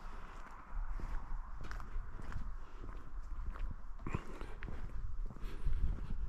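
Footsteps of a person walking on an asphalt parking lot, an irregular run of light steps.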